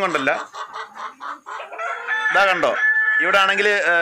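Domestic rooster crowing once, about two seconds in, a pitched call of about a second ending on a held high note, between a man's spoken words.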